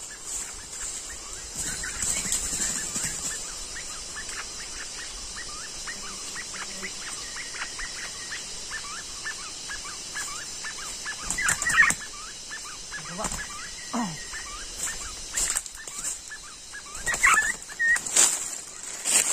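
A steady run of short chirps, about three a second, with louder calls and bursts of wing flapping near the end as a freshly snared young male Sumatran forest quail (puyuh tarun) is lifted out by hand.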